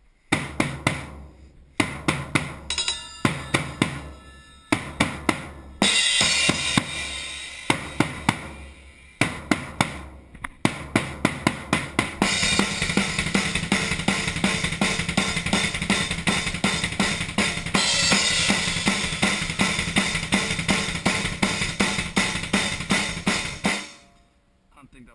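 Drum kit with Zildjian ZBT cymbals being played. For the first half it is a stop-start pattern of hits with short breaks. From about halfway it becomes a fast, continuous beat of bass drum and cymbals that cuts off abruptly near the end.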